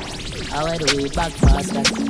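Dancehall DJ mix with turntable-style scratching: short sweeping scratch sounds over a beat with heavy kick drum hits, the loudest about one and a half seconds in.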